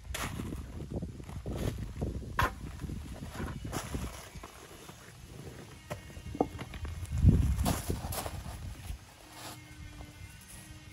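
River rocks knocking together as they are picked up by hand and dropped into a plastic bucket, mixed with footsteps on gravel. There is a run of irregular clatters, a few sharp clinks about six seconds in, and a louder clatter about seven seconds in.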